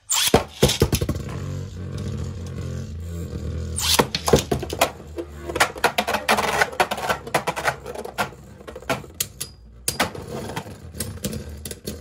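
Two Beyblade Burst spinning tops battling in a plastic stadium. A steady low whir of the spinning tops runs under frequent sharp clacks as they collide and strike the stadium walls, starting suddenly right at the opening.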